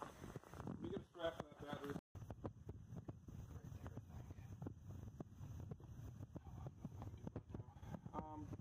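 Ford 8N tractor's four-cylinder flathead engine running at a steady idle: a low rumble with rapid light ticks. It sets in after a short voice that cuts off about two seconds in.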